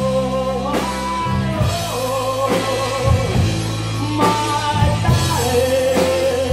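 Live rock band playing: two electric guitars, bass guitar and drum kit, with a male singer holding long notes over a steady drum beat.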